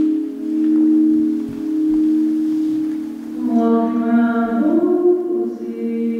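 Slow live music on keyboard and electric guitar. A held low chord swells and fades in slow pulses, about one a second. A little past halfway, a brighter, fuller chord comes in with a note that glides upward.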